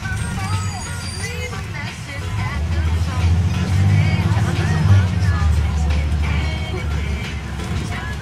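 School bus engine and road rumble heard from inside the cabin, growing louder about two and a half seconds in and easing off near the end, under faint chatter of other passengers.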